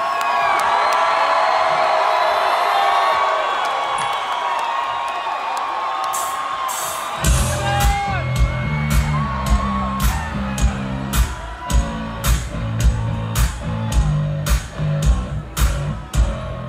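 Large concert crowd cheering and whooping, then about seven seconds in a live rock band comes in loud, with heavy drums and bass on a steady beat of about two hits a second.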